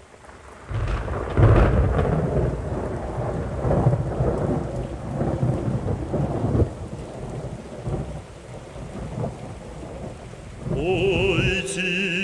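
Thunder rumbling over steady rain, a sound effect set into a music track, loudest in a peal about a second and a half in. Near the end a singing voice with strong vibrato comes in over it.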